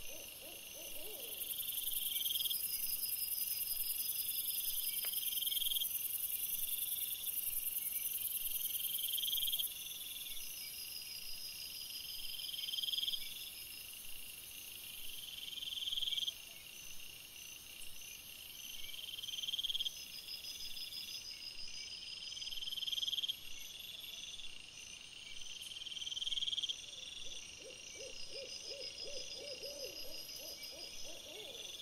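Night-time wildlife calls: a high-pitched call repeats about every two to three seconds, each one swelling and then cutting off suddenly, over a steady high hiss. A fast run of lower pulses comes at the start and again near the end.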